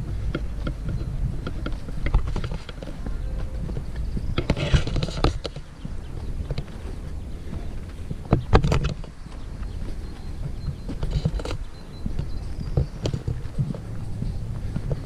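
Footsteps walking along a dirt footpath through grass, with a steady low rumble underneath. There are louder rustles about four to five seconds in and again past eight seconds.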